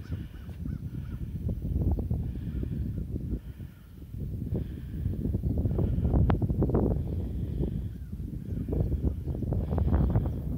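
Wind rumbling on the phone's microphone, with faint calls of distant waterfowl over the marsh recurring about once a second.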